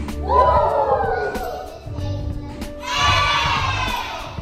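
A group of children chanting two long drawn-out calls together, each sliding down in pitch, over a backing track with a steady beat: the sound-effect shouts of a call-and-response name song.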